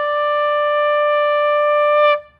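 Ram's-horn shofar blown in one long, steady held note with a bright, brassy ring.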